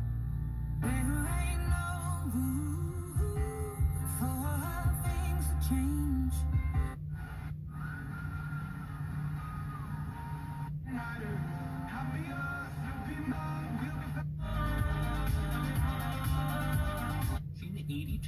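Car FM radio playing music, broken by several brief silent gaps as the tuner steps from one station to the next.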